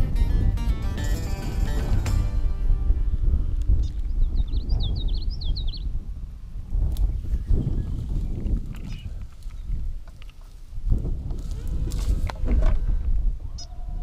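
Wind buffeting the microphone in a gusty low rumble. Music plays over the first two seconds. About four to six seconds in, a bird gives a quick series of high chirps.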